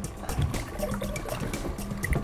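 Lake water sloshing and trickling in small irregular splashes as a landing net is worked in the water beside the boat, with background music.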